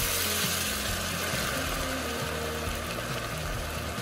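Red wine poured into a hot enamelled cast-iron pot of sautéed soup vegetables, sizzling and hissing steadily as it deglazes the pan, easing off slightly as the wine heats.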